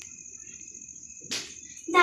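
A cricket trilling steadily on one high note, with a single brief knock a little over a second in.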